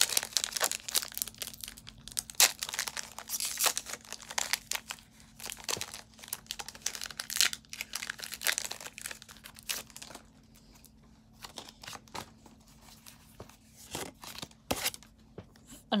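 Foil wrapper of a Pokémon Battle Styles booster pack being torn open and crinkled: a dense run of crackling tears and crinkles for about ten seconds, then a few sparser, fainter rustles and clicks.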